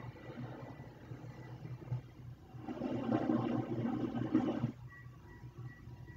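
Faint, muffled soundtrack of an animated TV episode playing in the room, over a steady low hum. It swells for about two seconds in the middle.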